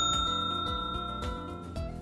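A bell-like ding, a subscribe-notification sound effect, rings with a clear high tone and slowly fades away over background music with a steady beat.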